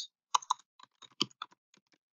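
Typing on a computer keyboard: a quick, irregular run of about a dozen light keystrokes that thins out near the end.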